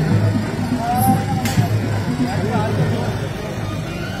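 Crowd voices with music underneath, loud and continuous, and one sharp click about one and a half seconds in.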